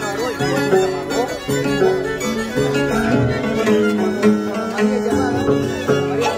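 A large wooden Andean harp and a violin playing a jarana together live, in a continuous run of stepped notes.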